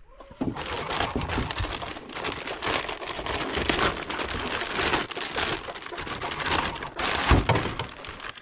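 A box being unpacked: packaging crinkling and rustling with irregular clicks and thunks, and a louder knock near the end.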